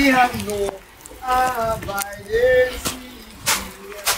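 Voices talking indistinctly in a few short phrases with brief pauses.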